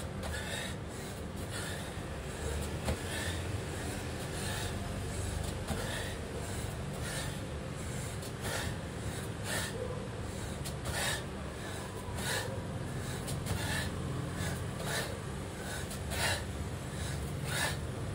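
A man breathing hard in short, forceful gasps, about one every second, while doing repeated bodyweight squats, with a steady low rumble underneath.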